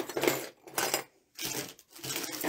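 Costume jewelry in small plastic bags being handled on a tabletop: metal pieces clinking and the packets rustling, in three short bursts.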